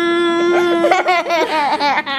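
A woman and a baby laughing, in short bursts from about a second in, over a steady held tone that stops about a second and a half in.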